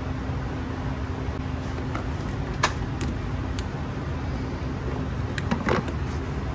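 A few light plastic clicks and taps from hands handling the battery's positive-post cap and cable: a single click about two and a half seconds in, two more within the next second, and a quick cluster near the end, over a steady low hum.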